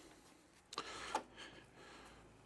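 A faint, brief clunk about a second in: the SolarEdge Backup Interface's switch changing over as mains power returns, putting the house back on the grid.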